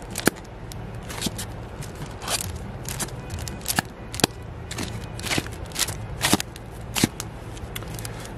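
Vinyl LP records in plastic sleeves being flipped one after another in a bin, giving an irregular series of sharp flicks and plastic slaps over a steady low hum.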